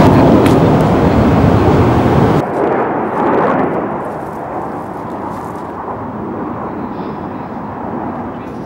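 Loud rushing, wind-like noise that cuts off abruptly about two and a half seconds in, leaving a quieter rushing hiss that slowly fades.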